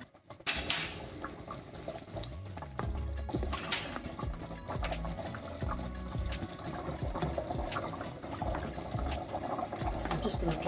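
A pot of curry simmering, its liquid bubbling steadily, with a few sharp clicks and knocks along the way.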